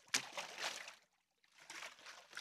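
Water sloshing in a baptismal tank as a man is lowered fully under for immersion baptism. A rush of splashing starts just after the start and dies away within a second, then a fainter slosh comes near the end.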